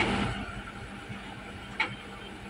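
Diesel locomotive idling at a standstill with a steady low hum. A loud rush of handling noise fills the first half-second, and there is a brief click near the end.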